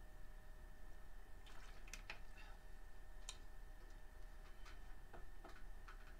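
Faint clicks and crinkles of a plastic water bottle being handled while drinking, in a few scattered clusters, over a steady low electrical hum with a faint high whine.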